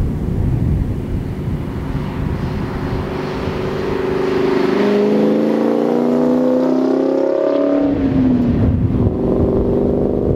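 A 1999 Mustang GT's 4.6 two-valve V8, breathing through Borla Stinger S-type exhaust and a catted X-pipe, accelerates past in second gear with its note rising steadily. About eight seconds in the revs drop sharply at the 4000 rpm shift into third, then the note starts climbing again as the car pulls away.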